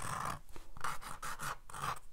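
Sharpie felt-tip pen scratching across textured cold-press watercolour paper in a series of short strokes as lines are drawn.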